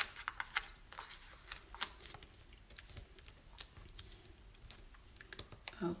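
Scattered light clicks and faint crinkling of hands handling a sheet of foam adhesive dimensionals and small paper pieces, picking and peeling the dots off their backing. The clicks come several at a time early on and thin out later.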